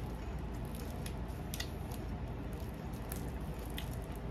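A person chewing fried chicken close to the microphone, with a few short wet mouth clicks over a steady low hum.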